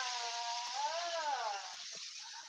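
A person's voice holding one long, drawn-out wordless tone that rises and falls in pitch, fading out shortly before the end, over a steady background hiss.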